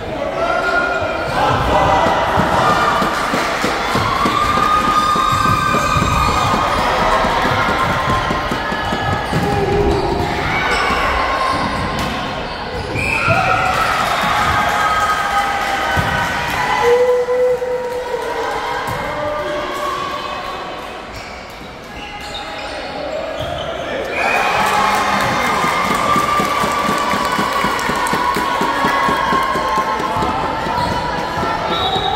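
Many voices shouting and calling over one another, echoing in a large sports hall, with thuds of a volleyball being played; it eases off briefly a little after two-thirds of the way through.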